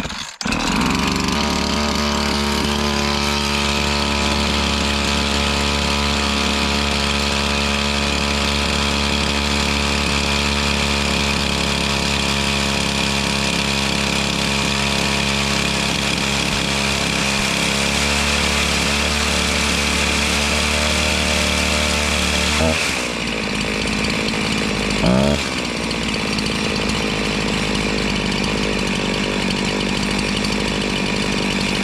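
Husqvarna 353 two-stroke chainsaw starting in the cold and running steadily, with its carburettor's low and high mixture screws opened up past the limiter stops to richen it for freezing weather. About three-quarters of the way through its note changes, followed shortly by a brief rise and fall in pitch.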